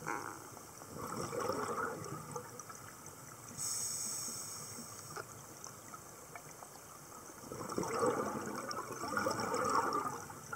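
Scuba regulator breathing underwater: a burst of exhaled bubbles gurgling about a second in, a steady hissing inhale in the middle, and a second, longer stream of exhaled bubbles near the end.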